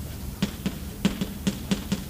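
Chalk writing on a blackboard: a quick, uneven series of sharp taps and clicks, about seven in two seconds, as the chalk strikes the slate.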